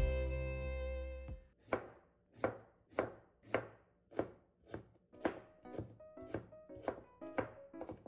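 Music fades out in the first second or so, then a kitchen knife chops through a cucumber onto a plastic cutting board, about two crisp strokes a second, quickening slightly toward the end.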